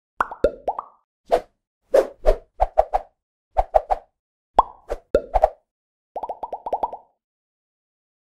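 Animated logo-intro sound effects: a string of short cartoon-style pops in small groups, some bending quickly up or down in pitch, ending about six seconds in with a rapid run of about eight pops.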